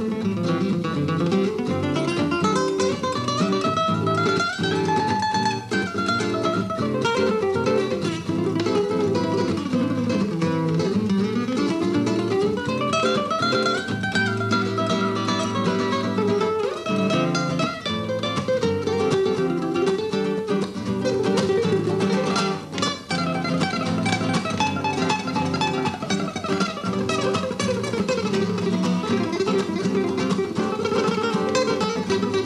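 Two nylon-string flamenco guitars playing a duet of flamenco-inspired jazz, with runs of single notes climbing and then falling over a plucked accompaniment.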